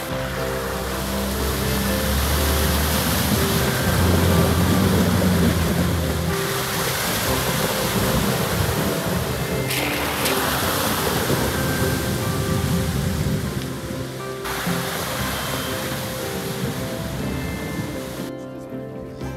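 Background music over loud rushing, splashing water as 4x4 off-road vehicles drive through a shallow stream ford; the water noise changes abruptly three times.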